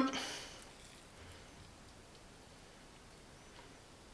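The end of a spoken phrase fades out in the first half second, followed by near silence with only faint room tone.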